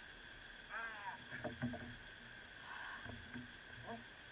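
Knocks and thuds on the hull of a small fishing boat while a big fish is played on a bent rod, a cluster of them a little after a second in and one more near the end. A short strained vocal sound from the angler comes about a second in, over a steady high hum.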